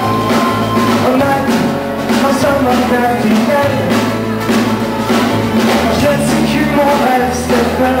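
Live rock band playing a mostly instrumental stretch: drum kit, electric bass and guitars, with the lead vocal coming back in at the very end.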